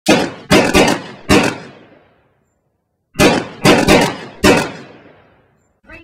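Sharp, heavy hits with long echoing tails: a single hit, a quick double hit, then one more. The same four-hit pattern repeats about three seconds later.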